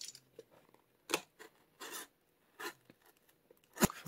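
Box cutter blade slicing at packing tape and cardboard on a shipping box: a few short, scratchy cuts, then a sharp knock just before the end.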